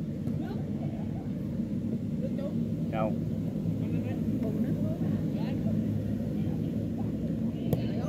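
Voices of boys calling out during a football game over a steady low rumble, with one sharp thump near the end that sounds like the ball being kicked.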